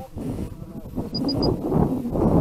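Wind buffeting the microphone of a rocket's onboard camera, a rough, uneven rumble. About a second in come three short, evenly spaced high beeps from the rocket's dual-deploy altimeter.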